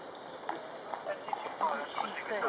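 Shod horses' hooves clip-clopping on a paved road as a troop of cavalry horses passes at a walk. People are talking close by from about half a second in, and their voices are the loudest sound.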